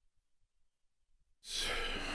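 Near silence, then near the end a person breathes out audibly close to a microphone, a sigh-like exhale lasting about a second.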